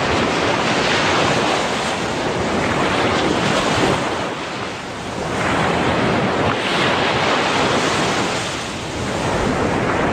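Ocean surf washing in and out, with wind buffeting the microphone. The rush swells and eases, dropping briefly about halfway through and again near the end.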